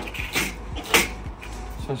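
Metal fence posts and rails being handled, with two short knocks about half a second and a second in.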